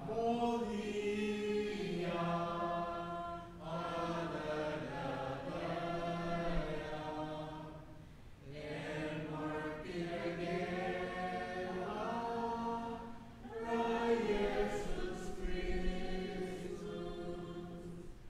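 Church congregation singing a hymn in Palauan together, in long sustained phrases of about five seconds with short pauses for breath between them.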